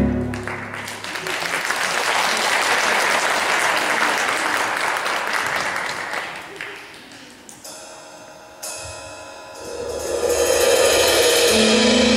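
Audience applauding in a theatre, dying away after about seven seconds. Sustained music begins and swells near the end.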